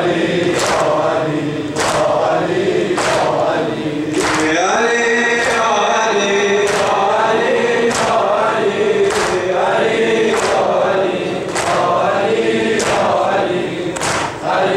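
A group of men chanting a Shia mourning lament (noha) in unison, with a steady beat of chest-striking (sineh-zani) at about three strikes every two seconds. A lead voice holds a long line about five seconds in.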